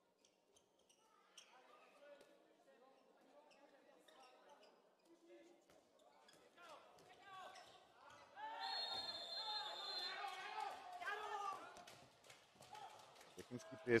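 Faint on-court sounds of an indoor handball game: the ball bouncing on the hall floor and players calling out. The sounds grow louder from about eight and a half seconds in.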